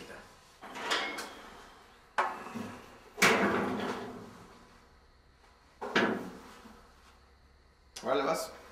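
Four sudden knocks or bumps, each fading away over a second or more, the loudest about three seconds in.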